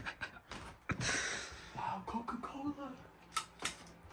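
Low, indistinct voices and breathy hissing, broken by a sharp click about a second in and two more clicks near the end.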